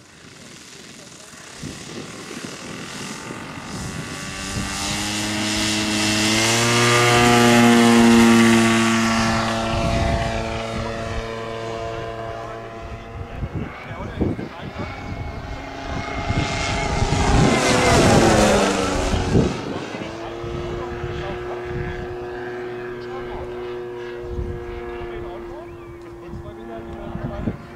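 Giant-scale radio-controlled P-51 Mustang's 35 cc Moki M210 engine and propeller opening up for the take-off, the pitch and volume rising over a few seconds and loudest about eight seconds in. A low pass comes a little past the middle, with the pitch dropping sharply as the plane goes by, then the engine runs steadily with the plane in the air.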